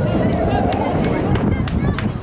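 Open-air sports-field ambience: indistinct shouting from players and onlookers over a low rumble of wind on the microphone, with a few brief sharp taps.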